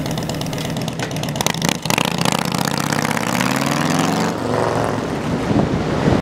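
Harley-Davidson V-twin cruiser motorcycle pulling away and accelerating down the road. Its engine pitch climbs steadily, breaks at a gear change a little past four seconds in, then climbs again.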